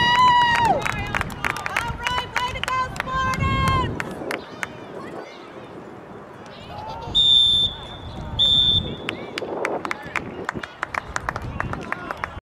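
A referee's whistle blown in two short blasts about a second apart, the signal for the end of the first half. Before it, voices shout across the field, with scattered sharp knocks.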